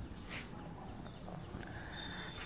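Faint taps of chalk on a blackboard as a point is marked on a graph, over quiet room noise.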